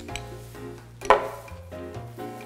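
Light background music playing, with one sharp clink about a second in: a metal spoon knocking against a ceramic cereal bowl.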